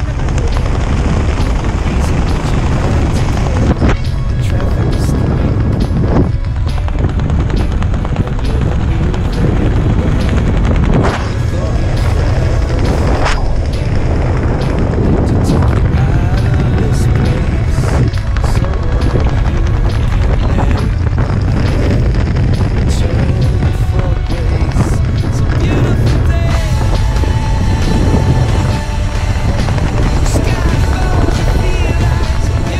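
Background music with a steady, heavy bass, laid over the parachute descent.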